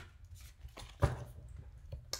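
Handling noise from a tarot card deck being picked up: a few light taps and one sharper knock about a second in.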